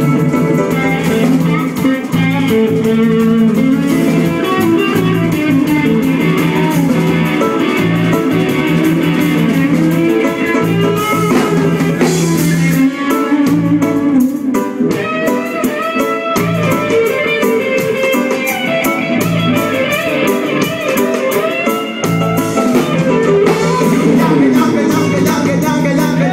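Live reggae band playing an instrumental passage, led by electric guitar over bass and drums. The bass thins out for a few seconds just after the middle.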